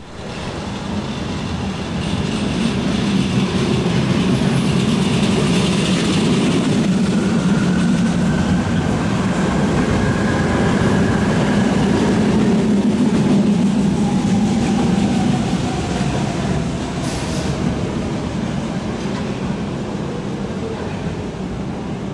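Two Vienna U-Bahn trains passing each other on line U4, one pulling away from the station and an older U-series train arriving. A steady rumble of wheels on track builds over the first couple of seconds, stays loud through the middle and eases off toward the end. Midway through there is a faint whine that rises and then falls in pitch.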